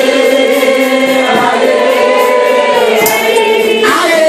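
Church congregation singing a worship song together, holding long notes.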